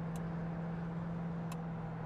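Steady drone of the 1970 Plymouth Cuda's 383 V8 at an even highway cruise, heard inside the cabin over road and tyre noise. Two faint ticks come through, one just after the start and one about a second and a half in.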